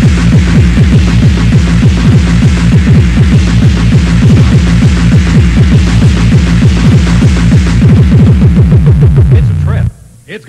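Electronic dance music from a taped club DJ set: a steady driving kick-drum beat under repeated falling low synth sweeps, cutting out suddenly near the end into a break.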